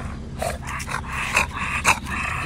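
Micro exotic American bully dog panting hard through an open mouth, with two sharper, louder breaths about halfway through and near the end.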